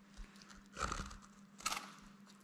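A boning knife cutting meat and membrane away from the bone of a yearling red deer shoulder: a few faint, short scraping and tearing strokes.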